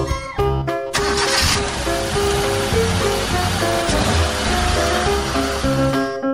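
A cartoon car driving sound effect, with engine and rushing noise, over background music. It starts abruptly about a second in and stops just before the end.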